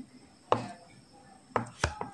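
Cleaver knife chopping down onto a bamboo cutting board, cutting thin slices into strips: a sharp knock about half a second in, then two knocks close together near the end.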